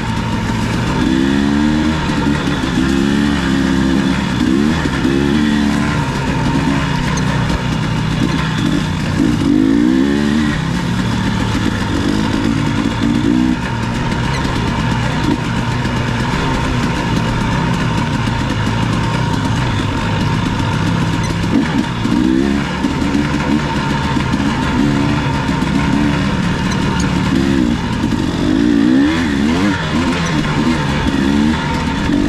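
Dirt bike engine running at trail speed, its revs rising and falling again and again with the throttle.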